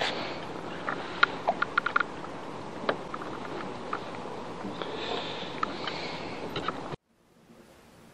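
Wind and lake water noise on a kayak-mounted camera's microphone, with scattered small clicks and knocks from gear being handled on the kayak. About seven seconds in it cuts off suddenly to near silence.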